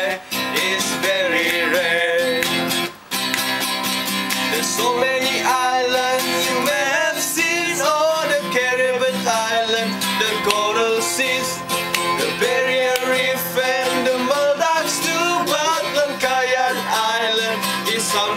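An acoustic guitar strummed live, with a small group of men's voices singing along. The strumming breaks off briefly about three seconds in, then goes on.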